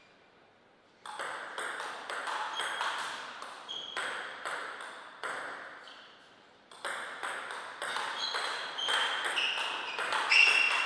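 Celluloid-type table tennis ball clicking off paddles and table in a fast rally that starts about a second in, a brief pause near the middle as the point ends, then a second rally of quick clicks.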